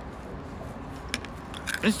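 Steady low background noise with one short, sharp click a little past a second in.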